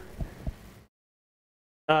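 Two soft, low thumps a quarter of a second apart, then about a second of dead, gated-out silence before a man's voice starts again near the end.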